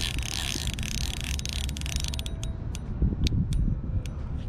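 Spinning reel's drag giving line to a hooked channel catfish. A rapid clicking buzz runs for about two seconds, then settles into a few separate clicks.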